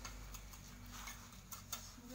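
A few faint, sharp taps of a steel mason's trowel against concrete blocks as blocks are laid and set in mortar.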